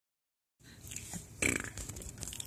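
Infant making a short burp-like throaty sound about one and a half seconds in, over faint background noise.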